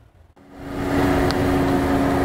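An SUV driving slowly past close by, its engine and tyre noise with a steady low hum. It comes in about half a second in, swells over the next half second, then holds steady.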